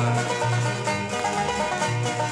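Folk song's instrumental passage between sung verses: plucked strings over a bass line stepping from note to note.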